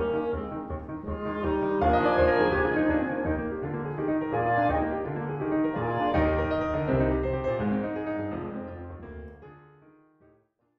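Classical chamber music with sustained chords, fading out over the last couple of seconds.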